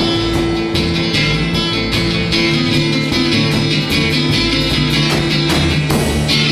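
A rock band playing live, with guitar to the fore over a steady beat.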